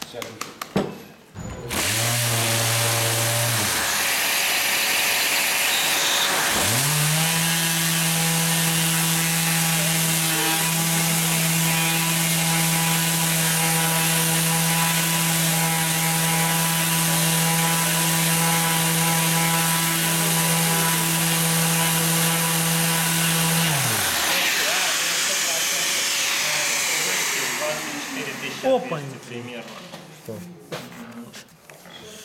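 Mirka electric random orbital sander sanding a pine board with an 80-grit mesh disc, with a dust extractor pulling air through it. A steady rushing hiss starts about two seconds in. The sander's motor hums briefly, then spins up again with a rising pitch and runs steadily for about seventeen seconds before winding down. The hiss fades a few seconds after that.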